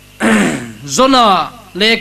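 A man clearing his throat into a close microphone in three short, rough voiced bursts, the middle one falling in pitch.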